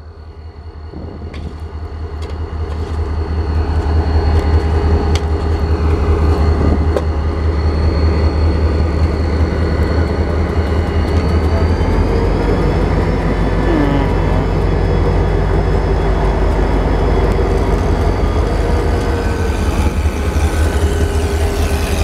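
Diesel-electric freight locomotives, WAMX 4040 with a snowplow on the front followed by WAMX 3505, rolling past close by with their engines running. A deep rumble grows louder over the first few seconds and then holds steady as the units pass, with a faint thin high whine over it.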